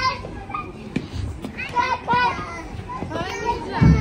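Young children's voices at a playground: a few short, high calls and chatter in the middle, fairly faint, with a few light taps.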